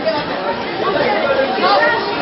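A group of children chattering, many voices talking over one another at once with no single speaker standing out.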